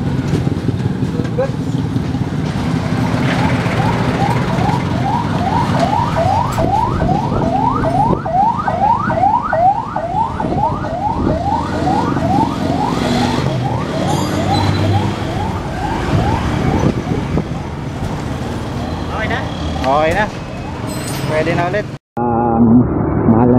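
Street traffic and motorcycle engines running, with an electronic siren sweeping rapidly upward in pitch over and over, about two to three sweeps a second, for roughly ten seconds in the middle.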